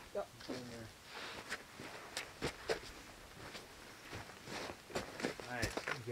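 Scattered footsteps and scuffs on sandy, gravelly ground as spotters shift under a boulder, with short sharp taps and faint low voices in between.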